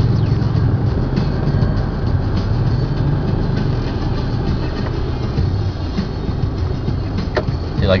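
Engine and road noise of a car heard from inside the cabin in slow city traffic: a steady low rumble, with one sharp click near the end.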